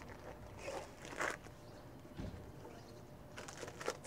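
Faint rustling and small handling noises as something is handed over, with a short run of quick soft clicks near the end.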